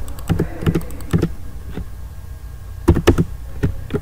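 Computer keyboard keystrokes and mouse clicks, scattered single clicks with a quick run of several about three seconds in. These are keyboard commands being entered in AutoCAD and cancelled with Escape.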